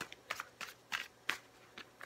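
A tarot deck being shuffled by hand: a run of quick, crisp card slaps, about three a second, with a short pause in the second half.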